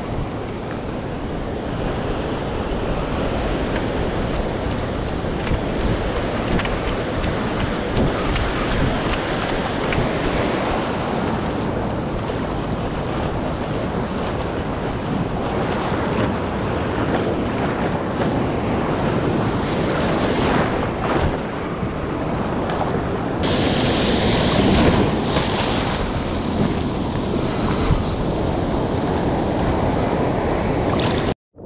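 Ocean surf breaking and washing, heard through steady wind buffeting on the GoPro's microphone. Later, water rushes and splashes around a surfboard as it is paddled out through whitewater, and a thin high steady tone joins in about two-thirds of the way through.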